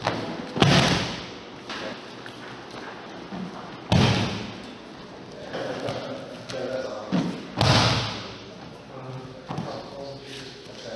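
Bodies hitting judo mats as a rolling sacrifice throw is done over and over: three heavy thuds, about a second, four seconds and eight seconds in.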